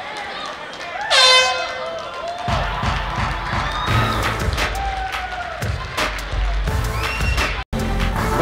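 A loud, short horn blast about a second in, the signal that the last round is over. Then music with a heavy bass beat starts over shouting voices from the crowd.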